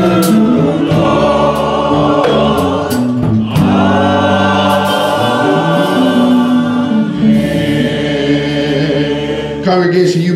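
Church choir and congregation singing a slow gospel hymn together in harmony, with long held notes and a short break between phrases about three and a half seconds in.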